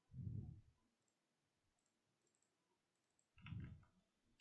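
Near silence broken by two soft, low clicks, one at the very start and one about three and a half seconds in: computer mouse clicks while browsing folders.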